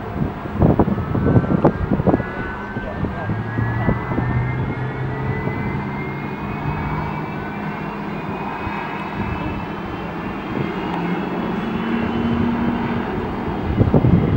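Airbus A330-200 turbofan engines running as the airliner taxis: a whine that rises slowly in pitch over a low, steady drone.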